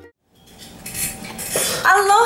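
A brief light clatter or handling noise, then near the end a woman's voice starts a drawn-out vocal sound that rises in pitch.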